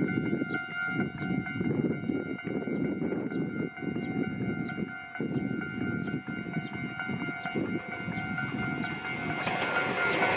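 Toyohashi Railway 1800 series electric train approaching on the track, its running and wheel noise swelling near the end as it passes close. A steady high ringing, pulsing about twice a second, runs over the rumble.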